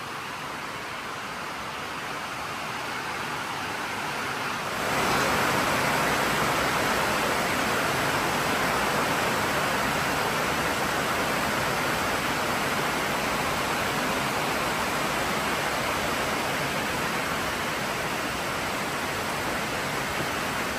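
Heavy rain falling on a metal barn roof: a steady, loud hiss that steps up sharply about five seconds in and stays strong.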